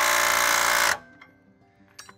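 Cordless impact wrench hammering a lug nut down onto a newly fitted wheel stud, driving it against a spacer to draw the stud into the hub. It runs loud with a fast, even rattle of blows and cuts off about a second in.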